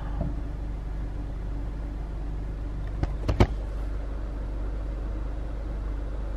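Low steady rumble of a car heard from inside the cabin, with a couple of short knocks a little after three seconds in.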